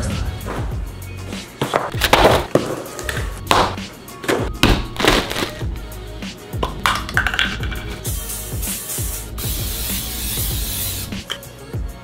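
Background music with a steady beat and short knocks and clatters of kitchen items being set down. About eight seconds in, an aerosol can of cooking spray hisses onto a frying pan in two sprays lasting about three seconds in all.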